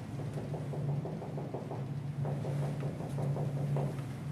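Dry-erase marker drawing on a whiteboard: faint, irregular scratchy strokes over a steady low room hum.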